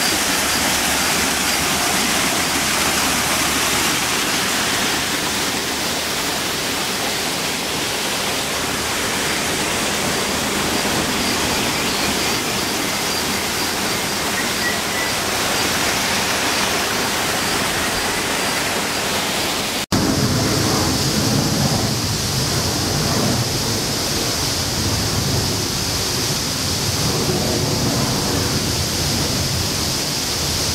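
Small rock waterfall rushing and splashing, a steady loud rush of water. About 20 s in, the sound cuts off abruptly and a different steady rushing noise takes over, with more low rumble and a brighter hiss.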